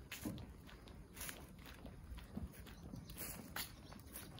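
Footsteps on an asphalt road at a slow walking pace, about one step a second.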